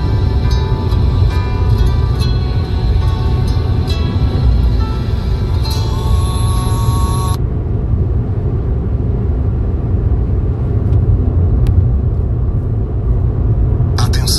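Steady low rumble of a car driving at highway speed, heard from inside the car. Background music with sustained notes plays over it and stops abruptly about halfway through.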